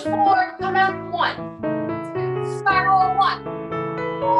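Piano accompaniment playing steadily, with a high, wavering vocal sound rising and falling over it several times.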